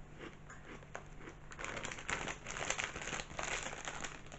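Crisp packet crinkling and rustling as it is handled, louder and busier over the last couple of seconds, with faint crunching of a light puffed potato snack being chewed.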